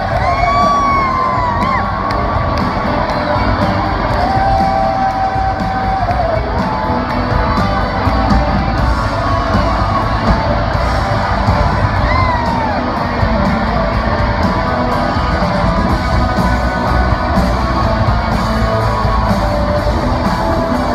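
Rock band playing live in an arena: electric guitars, drums and singing, heard through the hall's echo from high in the stands.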